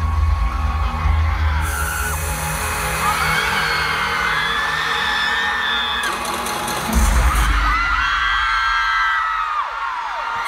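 Arena concert crowd screaming over loud amplified music with a deep bass. The bass drops away about two seconds in and comes back strongly about seven seconds in, while many high voices rise and fall.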